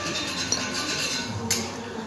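Small metal scooter transmission parts clinking and scraping on a concrete floor as they are handled, with one sharp clink about one and a half seconds in.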